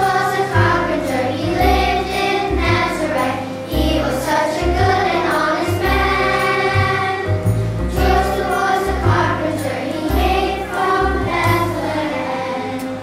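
Children's choir singing a Christmas song together over an instrumental accompaniment with a steady bass line.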